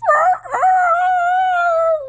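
A person's voice imitating a dog, stretching the bark 'Rrrrrrrr-rough!' into one long held note at a nearly steady pitch.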